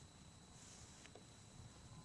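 Near silence: a faint low rumble with a steady high-pitched whine, and one faint click about a second in.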